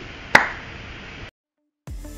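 A single sharp click about a third of a second in, followed by a brief moment of dead silence, then music starting near the end.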